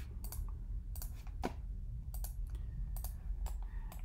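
Computer mouse and keyboard clicks: about a dozen short, sharp clicks at irregular intervals as the 3D viewport is turned around.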